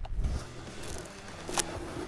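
Faint handling noise from clothing and gear, with a low rumble at first and a single sharp click about one and a half seconds in.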